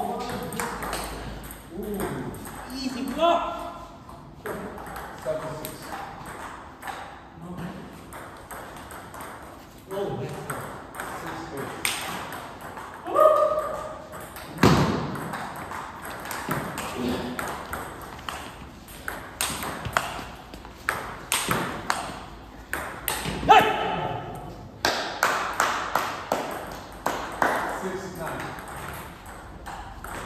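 Table tennis rallies: the ball clicks sharply off the bats and the table in quick irregular runs, pausing between points.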